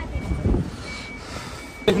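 A vehicle's reversing alarm beeping faintly about once a second over a low rumble of wind on the microphone, with a sharp knock just before the end.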